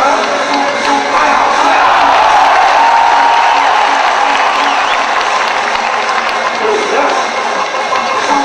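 A stadium crowd cheering and shouting over music with a steady, repeating beat.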